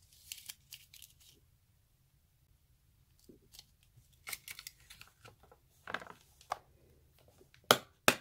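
Thin rolls of nail transfer foil crinkling and rustling in short bursts as they are handled and fitted into a clear plastic compartment case, with a brief lull in the handling. A sharp plastic click near the end, the loudest sound, as the case lid snaps shut.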